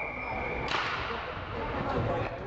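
Referee's whistle blowing one steady shrill note that stops about a third of the way in, followed at once by a sharp crack with a short echoing tail, over the general noise of an ice rink.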